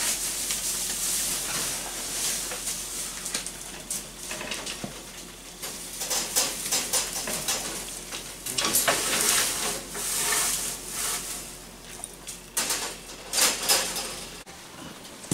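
Dry hay rustling as it is handled and pushed into a wire rabbit cage, in repeated bursts, with clicks and rattles from the cage wire.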